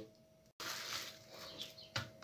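Faint crinkling of plastic cling film being stretched over a plastic tub and pressed down by hand, starting just after a brief silent break about half a second in.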